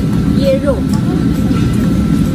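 A steady low rumble of background noise, with a short stretch of a voice about half a second in.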